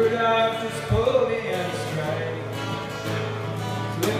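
Acoustic guitar played live with voices singing over it, the sung notes gliding up into long held pitches.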